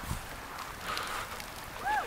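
Quiet outdoor ambience with a small bird chirping, two short chirps near the end.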